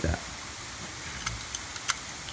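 A few light clicks from a stainless steel folding shelf bracket being handled, over a low steady background hum.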